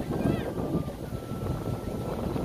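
Wind rumbling on the microphone, with faint, indistinct voices of people.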